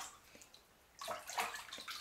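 Bathwater splashing and sloshing in a bathtub: nearly still at first, then a run of small, irregular splashes from about a second in.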